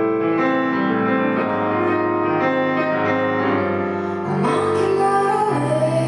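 A woman singing while accompanying herself on a digital stage piano, with long held notes.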